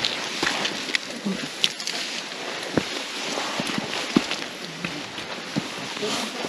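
Hikers' footsteps on a dirt mountain trail: irregular scuffs and knocks of shoes on earth and stones over a steady hiss of moving air and clothing.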